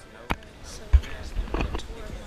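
A sharp click, then a heavy low thump about a second in, followed by muffled knocking and rustling.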